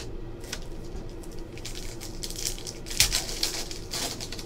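Foil trading-card pack wrapper crinkling and being torn open by hand, amid rustling of cards being handled, with one sharp crackle about three seconds in.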